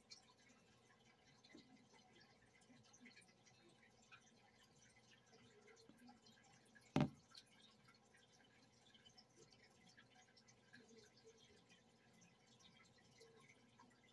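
Near silence: faint room tone with a steady low hum, broken once about halfway by a single sharp click.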